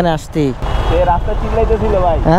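Road traffic noise in a jam, with engines running close by: a steady low rumble and a dense noisy wash, after a brief bit of speech at the start.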